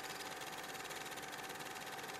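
A film projector running: a steady mechanical whir with a fine rapid clatter and a constant hum.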